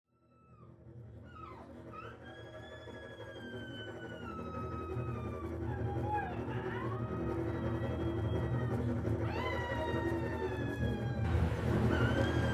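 Soundtrack music fading in: a low sustained drone with high, wail-like tones that glide up and down above it, growing steadily louder.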